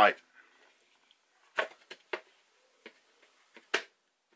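A heat sink being pressed into a tight cut-out in a fiberglass enclosure: a handful of short clicks and knocks, the loudest about one and a half seconds in and just before the end, as it snaps into place. The click is the sign of a tight fit.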